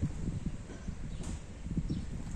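Slow, irregular footsteps on paved ground over a low rumble.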